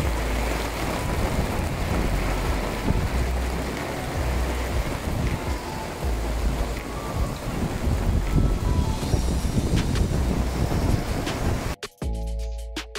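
Steady rain and wind, with gusts buffeting the microphone in low rumbles. It cuts off suddenly just before the end.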